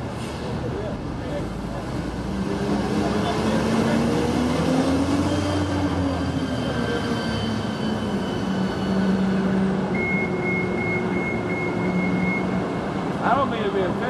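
Buses passing on a city street: a bus engine swells and its note rises and then falls as it goes by, over steady traffic noise. About ten seconds in, a rapid run of high beeps lasts a couple of seconds.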